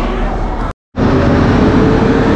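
Background chatter that cuts off abruptly into a split second of silence, followed by steady, louder vehicle noise with a held low hum from shuttle buses standing at a bus stop.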